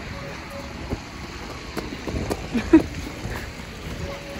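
Outdoor street ambience: a steady rush of wind on the microphone and distant traffic, with a few faint knocks and one short voice sound a little under three seconds in.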